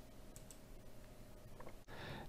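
Very quiet room tone with a few faint clicks, a couple just after the start and a couple more near the end.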